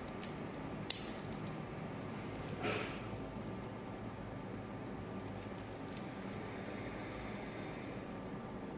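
A single sharp metallic click about a second in as the stainless steel double push-button safety clasp of a watch bracelet is snapped, followed by a brief soft rustle of the bracelet being handled, over a faint steady hum.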